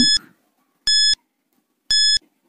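Countdown-timer sound effect: short, high-pitched electronic beeps, one each second, three in all, with silence between them, counting down the last seconds of the quiz question.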